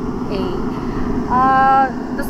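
A man's voice holding one drawn-out vowel for about half a second near the end, over a steady low rumble of outdoor background noise.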